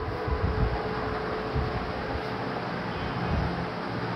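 Steady background hiss and hum with a faint steady tone running through it and irregular low rumbles.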